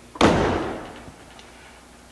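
A vintage car's door slammed shut once, a single hard slam about a quarter second in that dies away within a second, as the freshly adjusted door latch catches.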